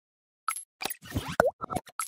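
A quick series of short cartoon pop and plop sound effects from an animated logo intro. They start about half a second in, and one near the middle has a quick bending pitch.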